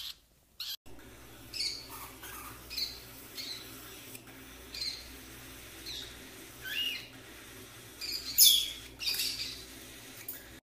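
A parrot's short chirps and squawks, about ten scattered calls over a steady low hum, with the loudest burst about eight and a half seconds in.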